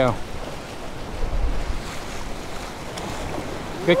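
Surf washing against the jetty rocks, with wind buffeting the microphone; a low rumble swells about a second and a half in.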